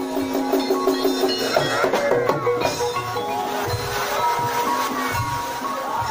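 Javanese gamelan music for the ebeg dance: ringing metal-bar notes with a steady pulse and low drum beats.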